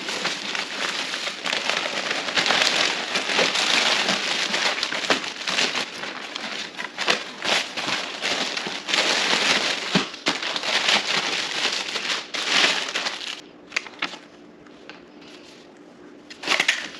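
Plastic packaging and a nylon carry bag rustling and crinkling while being handled and unpacked from a box, full of small crackles and clicks. It dies down a couple of seconds before the end.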